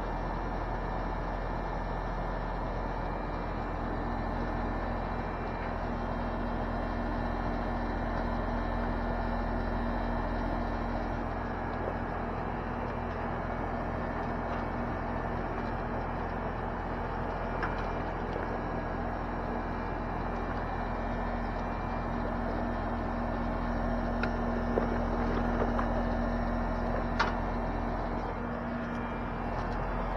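Outdoor central air-conditioner condenser unit running: a steady fan rush with a constant compressor hum. A few light clicks of metal hose fittings being handled in the second half.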